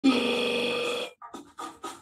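A person's voice holding one steady drawn-out sound for about a second, cutting off sharply, followed by a few short broken vocal noises.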